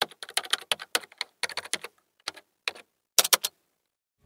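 Keyboard typing: a run of quick, irregular key clicks with small pauses between groups, ending in a short fast cluster near the end.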